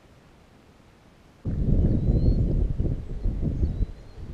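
Quiet at first, then about a second and a half in a loud low rumble of wind buffeting the camera microphone begins suddenly and rises and falls.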